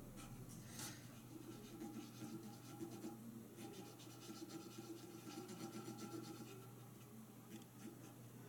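Faint, irregular scratching of a cotton swab rubbed in small strokes over the printed lettering on a painted metal watering can, scrubbing off a water-based inkjet image transfer.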